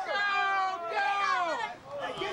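Several people screaming as a brawl breaks out, with high-pitched overlapping cries. Two long screams fall in pitch, the second ending about three-quarters of the way through.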